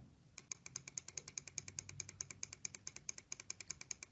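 A computer key tapped rapidly and evenly, faint clicks about ten a second, stepping the cursor back through a calculator entry.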